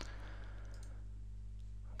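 Quiet room tone: a steady low hum with faint hiss, the haze thinning about a second in.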